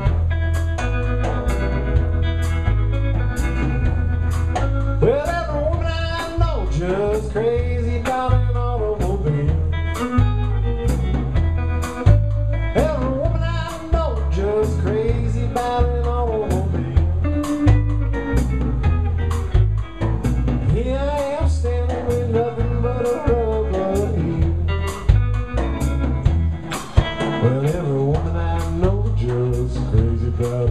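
Live blues band playing: electric guitar lead with bending notes over bass guitar and a drum kit keeping a steady beat.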